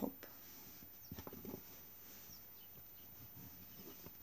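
Faint handling noise: a brief cluster of soft clicks and rustles about a second in as hands turn over a crocheted panel and a crochet hook on a cloth-covered table, otherwise quiet room tone.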